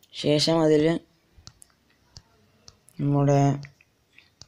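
A man's voice speaking two short phrases, with a few faint, sparse light clicks in the gap between them.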